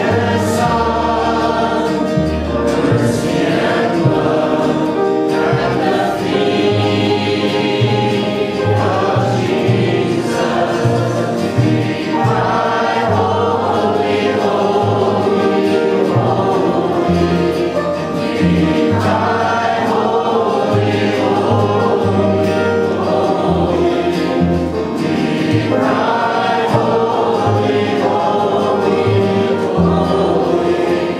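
A small church choir singing a gospel song to acoustic guitar and upright bass, with the bass plucking steady low notes under the voices.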